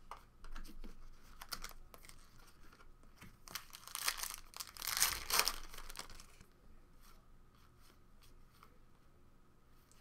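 A trading card pack's wrapper being torn open and crinkled by hand, with irregular rustling that is loudest in the middle, then lighter crinkles and clicks as the cards are handled.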